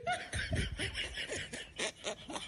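People laughing quietly in a string of short, breathy bursts.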